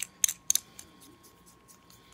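A few sharp light metallic clicks, the loudest three about a quarter-second apart in the first half-second, then a couple of faint ticks: the brass threaded cap of an Armor tube mod being screwed home and the metal tube handled.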